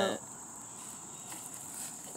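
Crickets trilling steadily at a high pitch, one unbroken tone.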